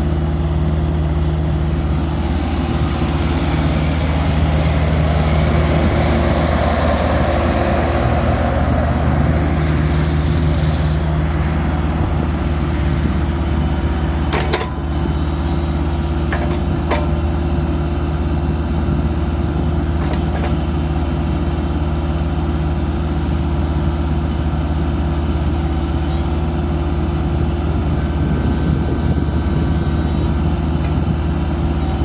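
Kubota three-cylinder diesel engine of a 2014 Bobcat E26 mini excavator running steadily. It grows louder and rougher for several seconds a few seconds in, and a few sharp clicks come about halfway through.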